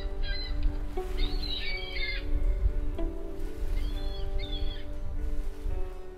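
Background music of slow held notes, with bird calls over it three times: briefly near the start, for about a second from one second in, and again around four seconds in.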